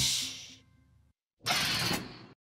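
A crash that dies away over about half a second, then a short silence and a second brief noisy burst about a second and a half in.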